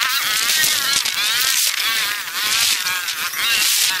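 A continuous high-pitched buzz laced with wavering whines that rise and fall quickly: street-ride audio played back many times faster than real time.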